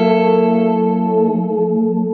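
Electric guitar chord struck once right at the start, ringing out and slowly fading with a long reverb trail from a Catalinbread Cloak reverb pedal.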